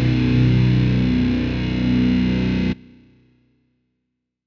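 Heavy metal band music led by distorted electric guitar, ending abruptly about three-quarters of the way through, with a brief ringing tail that fades to silence.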